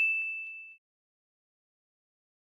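A single high metallic ding that rings out and fades away within the first second, followed by silence.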